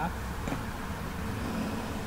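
A car driving past on the road, a steady low sound of engine and tyres.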